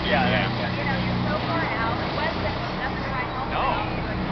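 Car barge's engine running with a steady low drone while under way, with people's voices talking over it.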